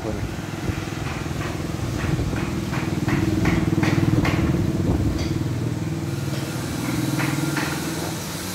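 A motor runs steadily with a low hum, swelling louder for a few seconds midway and then easing off, with scattered short clicks or taps over it.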